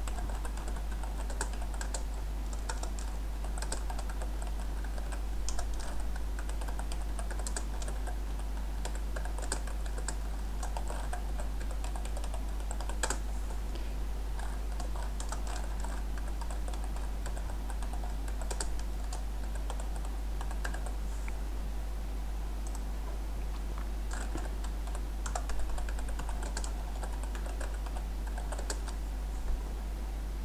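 Typing on a computer keyboard: irregular runs of quick key clicks with short pauses between words, over a steady low hum.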